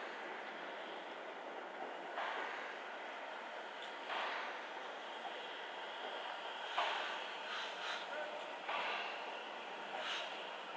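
Steam Motor Coach No 1 ('Coffee Pot') steam railmotor moving slowly, its exhaust giving a soft chuff about every two to two and a half seconds. The beat is loudest about seven seconds in.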